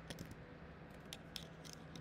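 Scattered light clicks of computer keyboard keys and mouse buttons, about half a dozen at irregular spacing, over a faint steady hum.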